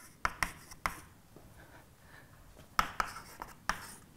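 Chalk writing on a blackboard: a few sharp taps and short scratchy strokes at the start, a quieter stretch, then another group of taps near the end.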